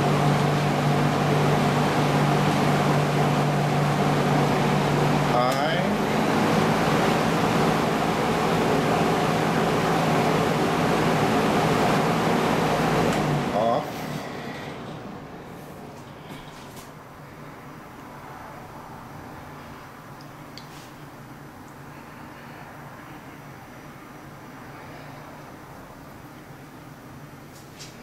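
Vintage Penncrest 20-inch box fan with a Redmond motor running: a steady rush of air over a motor hum, with a little rattle from a grill that is missing a screw. About halfway through there is a click and the fan sound drops sharply, winding down over a few seconds to a much quieter level.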